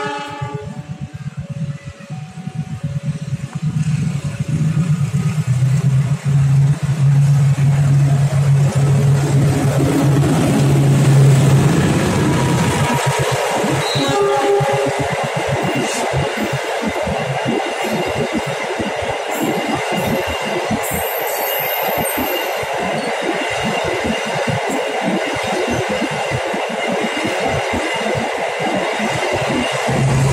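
A passing passenger train on the adjacent track. The diesel locomotive's low engine drone grows louder as it approaches and drops away suddenly about twelve seconds in as it goes by. The coaches follow with a steady rush and rapid clatter of steel wheels on the rails.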